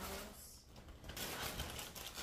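A plastic snack bag crinkling and rustling as it is handled, loudest in the second half.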